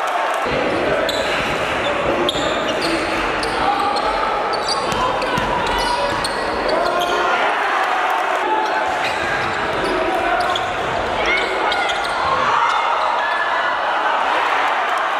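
Live sound of a basketball game in a large, echoing gym: a basketball bouncing on the hardwood court under a steady mix of crowd voices and players' shouts.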